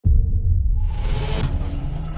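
Deep cinematic rumble from trailer sound design that starts abruptly, with a hissing wash building over it from about a second in.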